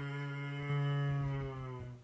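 Didgeridoo played with one steady, low, buzzing drone that swells louder through the middle and stops near the end.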